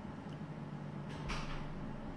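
Quiet room tone with a faint steady low hum and one short soft hiss about a second in.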